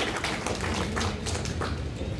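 Audience clapping: a patter of irregular hand claps.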